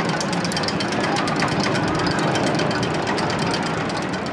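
ABC Rides tube coaster train climbing its lift hill, with a rapid, even run of clicks, many a second, over a steady mechanical rumble: the anti-rollback ratchet clacking as the train is pulled up.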